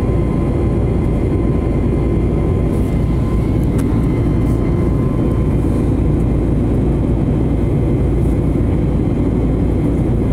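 Jet airliner in flight heard from inside the passenger cabin: a loud, steady rush of engine and airflow noise, heaviest in the low end, with a faint steady whine above it.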